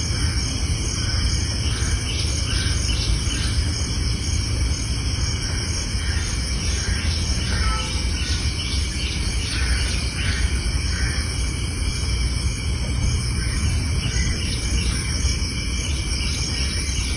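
Insects chirring steadily in a banana plantation, with faint repeated pulses in their chorus and a steady low rumble underneath.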